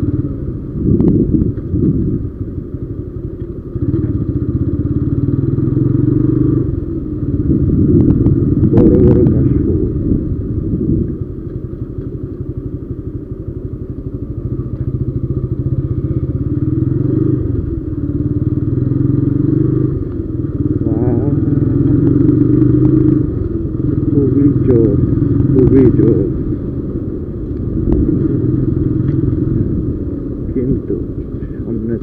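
TVS Apache RTR 160's single-cylinder four-stroke engine running as the motorcycle rides along, its note easing off and building again several times with the throttle, over steady road and wind noise.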